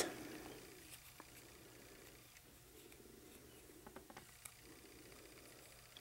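Near silence, with a few faint ticks of a stick smoothing self-adhesive film on a fingernail, once about a second in and a few more around four seconds in.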